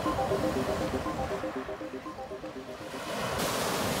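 Sea surf: a steady wash of breaking waves that swells near the end. Over it, soft music of repeated short notes fades out in the first couple of seconds.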